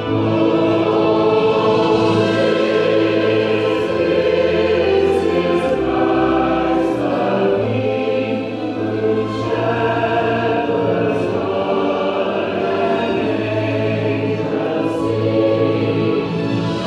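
Mixed choir of men's and women's voices singing together in long held chords, with the sharp 's' sounds of the words cutting through now and then.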